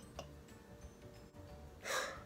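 A woman takes a quick, audible breath in near the end of a short quiet stretch.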